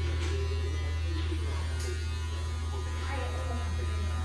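Electric hair trimmer running with a steady low buzz while trimming the hair at the back of the neck.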